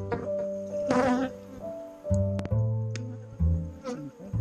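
Honey bees buzzing around their hives, swelling briefly about a second in, over background music with a low bass line that steps from note to note.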